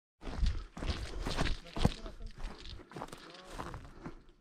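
Footsteps on dry, stony scrubland ground, uneven and irregular, with a faint voice in the background.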